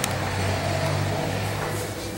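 A steady low hum that starts abruptly and weakens shortly before the end.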